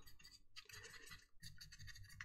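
Faint, irregular scratching of a small paintbrush worked over a painted plastic model kit hull.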